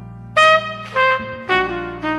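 Jazz trumpet entering about half a second in over a sustained piano and bass accompaniment. It plays a phrase of three notes, each lower than the last.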